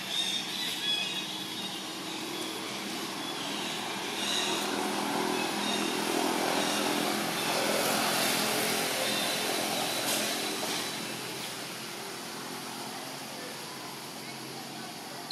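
A motor vehicle engine passing by, growing louder to a peak about eight seconds in and then fading away.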